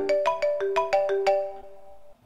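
A phone ringtone: a quick melody of bright, struck, bell-like notes, about five a second, ending on a held note that fades near the end.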